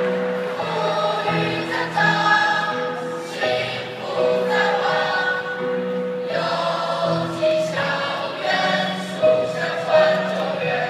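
A large mixed group of young men's and women's voices singing together as a choir, moving through held notes of about a second each.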